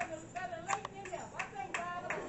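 About five scattered hand claps at irregular intervals, over faint background talking.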